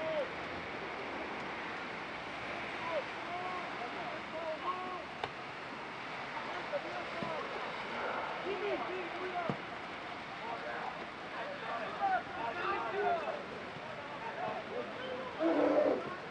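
Players' and coaches' shouts carry across a football pitch: short, scattered calls over a steady background hiss, with a louder shout near the end.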